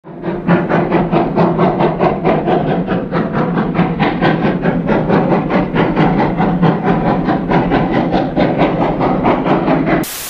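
Steam locomotive V&T #29 working upgrade, its exhaust chuffing in a steady rhythm of about five beats a second.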